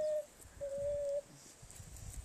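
Alpaca humming: two short, even, level-pitched hums, the second one longer.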